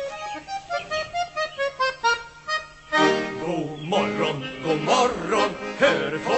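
Chromatic button accordion playing an instrumental break in a cheerful Swedish song: a run of quick separate melody notes, then from about three seconds in fuller chords with bass notes underneath.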